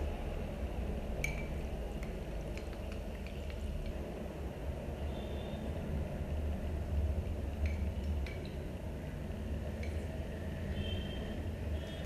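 A glass bowl clinking faintly a few times as it is handled and tipped up to the mouth to finish the ramen, over a steady low hum.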